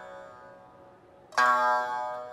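Traditional Japanese dance music on a plucked string instrument: one note rings and dies away, then a new, sharply plucked note sounds about one and a half seconds in.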